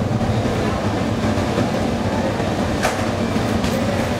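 Cremation furnace running behind its closed steel door, a steady low rumble of burner and blower. A single sharp click about three seconds in.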